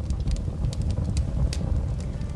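Fire sound effect: a steady low roar of flames with scattered sharp crackles.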